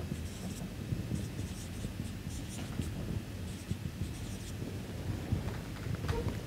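Marker pen writing on a whiteboard: a series of short, faint scratchy strokes as words are lettered on.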